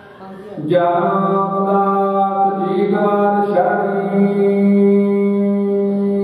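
A man chanting Sikh devotional Gurbani into a microphone, singing long held notes. The chant starts under a second in after a brief lull and moves to a new note about halfway through.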